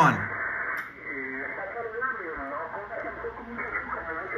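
Single-sideband voice signal on the 20-metre band, heard through an Elecraft K3 transceiver: thin, band-limited speech over a steady hiss. The voice comes through about a second in, as the NR-1 noise blanker is switched on against heavy power-line noise.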